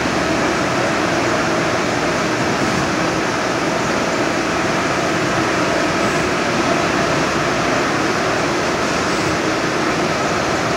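EFI VUTEk HS100 Pro wide-format UV-LED inkjet printer running while printing, a steady mechanical hum and whir with a few faint held tones and no breaks.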